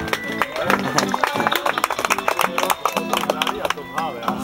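Acoustic guitar strummed quickly, chords ringing with no singing over them: the instrumental ending after the last sung line of a song.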